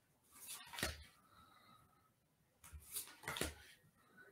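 Oracle cards being handled and swapped in the hand: brief papery swishes and taps of card stock sliding against card, about half a second in and again near three seconds.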